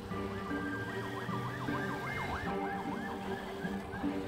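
An electronic siren sweeping up and down in pitch, its cycles quickening about a second and a half in and fading before the end, heard over background music.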